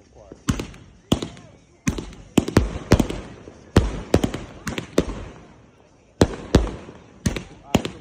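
"Ghost" 200-shot consumer firework cake firing: a rapid, irregular string of sharp bangs as shells launch and burst. It starts about half a second in, with a brief lull around six seconds before the shots pick up again.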